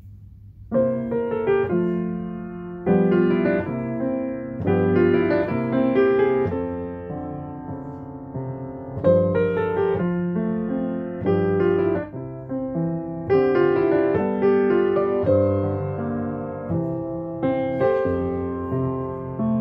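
Grand piano played solo in a slow chordal piece. It starts about a second in, with chords struck every second or two and left to ring and fade.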